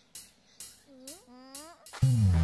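Cartoon sound effects: a run of short, sharp high ticks about twice a second, with two brief rising 'huh?'-like vocal sounds from a cartoon character about a second in.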